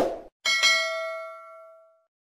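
Subscribe-button sound effect: a click, then a bell chime about half a second in that rings several tones at once and fades out over about a second and a half.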